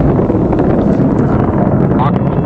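Steady low rumble of an Atlas V 541 rocket in powered ascent, its RD-180 main engine and four solid rocket boosters firing, heard from a distance with wind buffeting the microphone.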